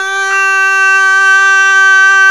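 A likay singer holding one long, loud, steady note on the syllable "ta" at the end of a sung line.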